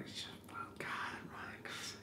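Soft whispered speech from a man, quiet and breathy, in a pause between louder talk.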